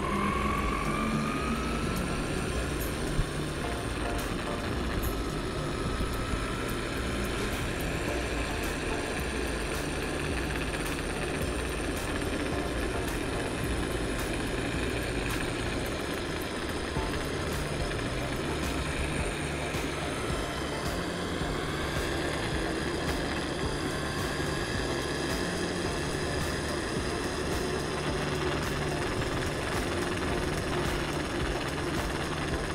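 Steady rolling and wind noise from riding an electric unicycle. A thin electric-motor whine rises in pitch about a second in and again around twenty seconds in.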